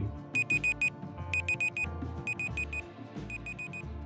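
Quiz countdown timer beeping in quick bursts of four high electronic beeps, about one burst a second, like a digital alarm clock, while the timer counts down from five. Soft background music plays underneath.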